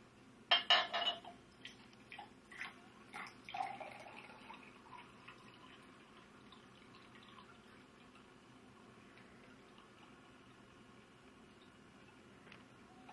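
Water poured from a plastic bottle into a drinking glass. A short loud burst of noise comes about half a second in, then a few small clicks and splashes, then the pitch of the pour rises as the glass fills before fading to a faint trickle.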